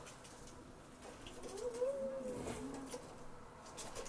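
Dry brushwood twigs crackling lightly as they are handled and stripped by hand, with one short call that rises and falls in pitch about halfway through.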